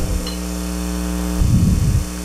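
Steady electrical mains hum: a low buzz with many overtones and no cutting sound. A short low rumble comes near the end.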